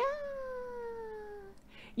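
A single long, high vocal sound that rises quickly at the start and then slides slowly down in pitch for about a second and a half before fading out.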